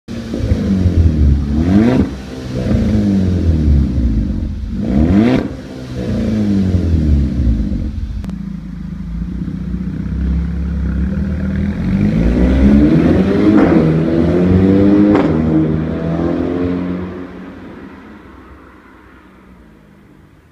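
Exhaust of a 2012 VW Golf VI GTI's 2.0-litre turbocharged four-cylinder through an aftermarket HMS flap exhaust with the flap open: two quick revs, then the car pulls away accelerating with two sharp cracks along the way, fading as it moves off.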